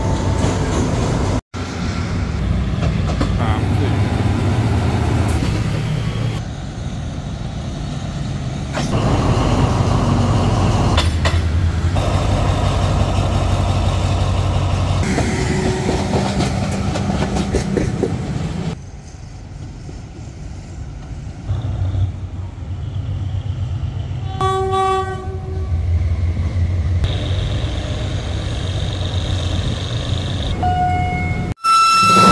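State Railway of Thailand diesel locomotives and their trains passing close by, in several cut-together clips: engines running with a steady low rumble and carriages rolling past on the rails. A locomotive horn sounds briefly a few seconds before the end.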